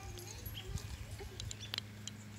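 A baby's soft babbling and grunting sounds, with a few sharp clicks from handling a plastic toy near the end, over a steady low hum.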